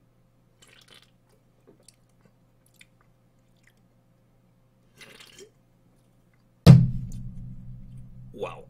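Faint sips, swallows and small mouth clicks from drinking out of a soda can. Near the end comes a sudden loud boom that fades into a low rumble.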